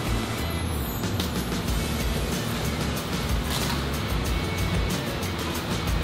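Background music with a steady beat, over a 2018 Toyota Camry driving slowly up a driveway and pulling in.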